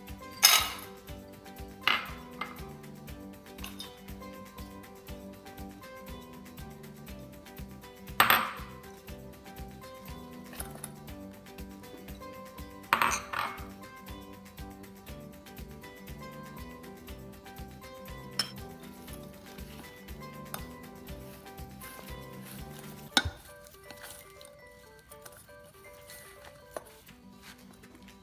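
Metal spoon and glass bowls clinking and knocking against a stainless steel mixing bowl as walnuts, dates, grated carrot and a spoonful of flour go in and are stirred. A handful of sharp, ringing clanks stand out: near the start, at about two, eight and thirteen seconds, and a last one about five seconds before the end. Light background music plays under them and stops around the last clank.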